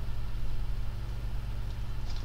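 A steady low hum made of a few constant low tones, with a faint hiss over it.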